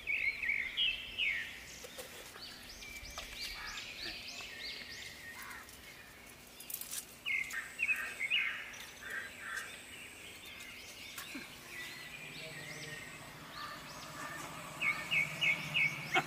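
Small birds chirping in short runs of quick, high repeated notes, coming in several bursts over a faint steady background.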